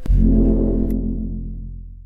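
A single deep, booming music hit, like a gong or timpani stroke, struck suddenly at the start and slowly dying away over about two seconds.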